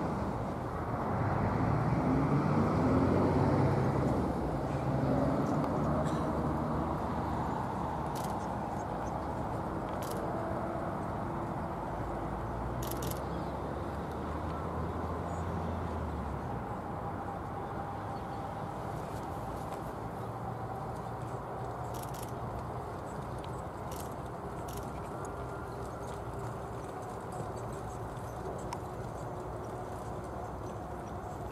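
A motor vehicle running nearby, loudest in the first few seconds, its low hum fading out about halfway through. Then faint hoofbeats of a pony pair pulling a carriage, with a few sharp clicks.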